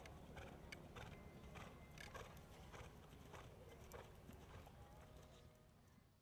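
Faint hoofbeats of a thoroughbred mare cantering on sand arena footing, a few soft thuds a second, fading out near the end.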